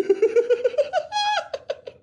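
A man laughing: a quick run of short pulses climbing in pitch, a brief held high note about two-thirds in, then a few fading breaths of laughter.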